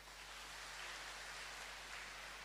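Faint, steady applause from a large audience, heard as an even patter.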